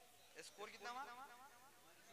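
Mostly near silence, with a brief, faint man's voice speaking a short phrase about half a second in.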